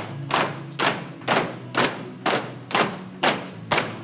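Marching footsteps of a small group stamping in step on a stone-tiled floor, about two heavy stamps a second, with a steady low hum underneath.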